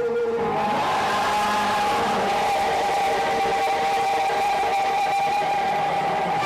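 Live gospel worship music: one long steady note held at mid pitch, over an even wash of sound from the band and the room.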